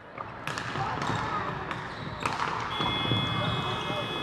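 Sports-hall ambience of indoor hockey, with players' voices and a few sharp clicks of stick and ball. About two-thirds of the way in, a steady electronic hooter starts and holds: the full-time signal ending the match.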